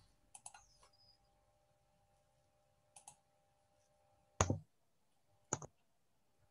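Computer mouse clicking a few times at irregular intervals, the loudest click about two-thirds of the way through and a quick double click near the end, over a faint steady hum.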